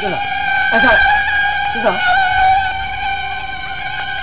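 Steady buzzing drone in a film soundtrack: a held tone with several overtones that runs on without a break. Short falling glides cut across it near the start, about a second in, and again about two seconds in.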